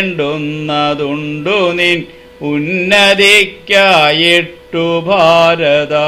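A man chanting Malayalam verse in a sung recitation: phrases on held, steady pitches that slide between notes, with short breaks for breath.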